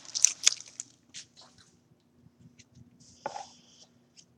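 Trading card pack wrapper crinkling and cards being handled: a few soft crackles in the first second, then a brief swish a little after three seconds. A faint steady hum runs underneath.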